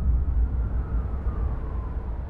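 Deep, steady low rumble of a sound-design drone, with a faint tone gliding slowly downward in pitch.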